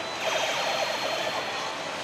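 Steady din of a pachislot hall. About a quarter second in, a pitched tone falls in pitch for about a second.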